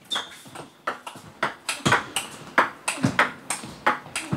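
Table tennis rally: the ball clicking sharply off the bats and the table in quick alternation, several hits a second.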